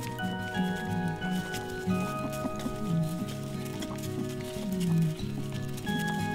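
Background music: slow, held notes layered at several pitches over a low melody that moves up and down.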